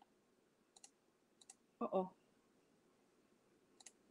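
Light clicks of a computer mouse, three times over a few seconds, each a quick double tick of button press and release.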